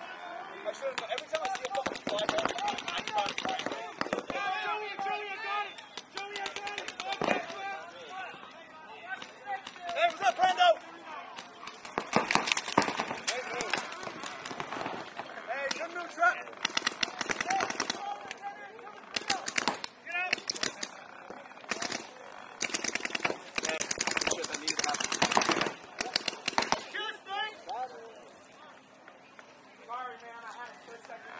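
Paintball markers firing in rapid volleys, several long runs of fast shots one after another, with players' voices and shouts between the bursts.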